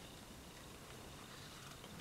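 Near silence: faint room hiss with a few soft ticks.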